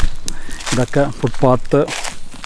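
A man speaking close to the microphone.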